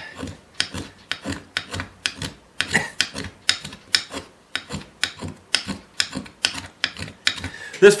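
A small luthier's finger plane scraping along a hard-wood fiddle fingerboard in quick short strokes, about three a second. The plane's new blade is dull and not yet honed for such hard wood.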